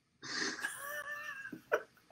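A person's high-pitched, breathy, wheezing laugh: one held note that rises slightly and falls back, then a short breath near the end.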